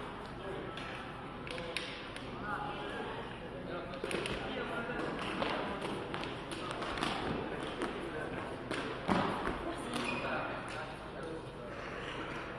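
Foot-shuttlecock rally: a few sharp kicks of the shuttlecock and players' footsteps on the sports-hall floor, the loudest knock about nine seconds in, with voices talking in the hall.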